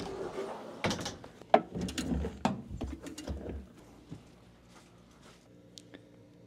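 A run of mechanical clicks, knocks and rattles from something being handled, lasting about three seconds, then dying away to faint ticks.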